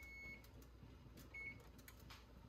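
Two short, faint beeps from an electric range's control panel as the timer is set for the 10-minute canning process: the first just at the start, the second, shorter, about a second and a half in.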